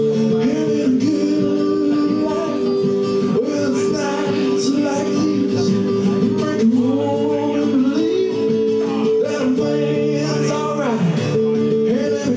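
A male voice singing with a strummed acoustic guitar accompaniment.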